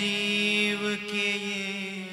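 A man singing a Hindi devotional verse to harmonium accompaniment: the harmonium holds a steady chord while the voice sustains a long, wavering note that dips briefly about halfway through.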